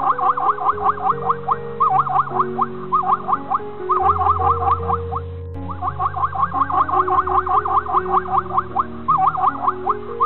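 Background music: a quick run of repeating notes that swoop up and down in pitch, over held low bass notes, with a steady rhythm.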